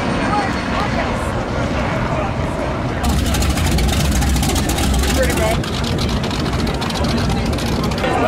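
Cigarette offshore powerboat idling slowly by with a deep, rapid exhaust burble that comes in about three seconds in and is loudest for a couple of seconds. Crowd chatter continues underneath.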